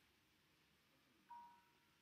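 Near silence, broken about a second and a half in by one short, faint chime that fades quickly.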